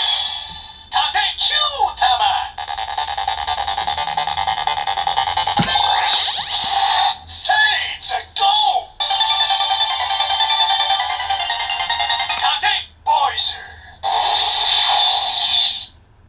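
DX Seiza Blaster toy playing its electronic sound effects, jingles and synthesized voice calls through its small built-in speaker, set off by the Tate (shield) Kyutama loaded in it. It plays as a string of separate warbling passages with short breaks, thin and tinny with no bass.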